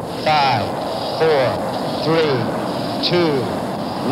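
A man's voice counting down the last seconds of a rocket launch countdown, one short number about every second, over steady background noise.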